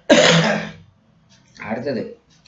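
A man clears his throat once, a sudden loud burst that fades within a second, and then speech resumes near the end.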